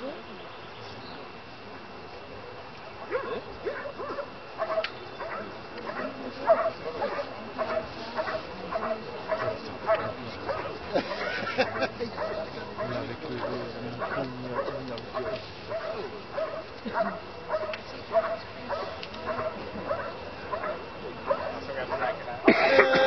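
Bouvier des Flandres barking over and over at a steady pace, about two barks a second, starting a few seconds in and keeping on. This is the bark-and-hold at a helper's hiding blind in a Schutzhund protection routine.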